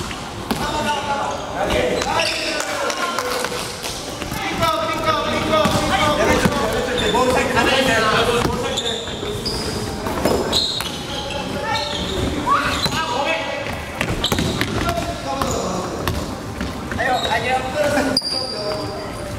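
A basketball bouncing as it is dribbled and passed on a wooden gym floor, amid players' voices calling out during play.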